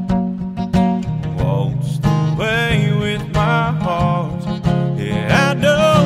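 Acoustic guitar strummed in a steady country rhythm, with a man's voice singing over it from about a second in.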